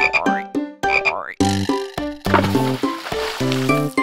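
Two cartoon frog croak sound effects, each a quick rising sweep, over short plucked notes of a children's song, followed from about a second and a half in by bouncy instrumental music with a bass line.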